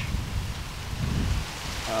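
Wind buffeting the microphone: an uneven low rumble with a faint hiss above it.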